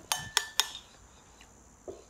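Three light clinks of a wire whisk against a ceramic bowl in quick succession, each leaving a brief ring. A small soft sound follows near the end.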